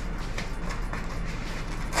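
Kraft-paper mailer being handled and unfolded by hand: faint crinkling and rustling of paper over a steady low hum.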